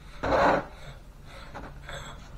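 A short rasping scrape lasting under half a second as the steel hydraulic cylinder is handled on the bench, followed by a few fainter rubs near the end.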